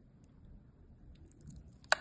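Soft, wet squishing of saucy scalloped potatoes being lifted with a metal spoon, then a sharp click near the end as the spoon knocks against the glass baking dish.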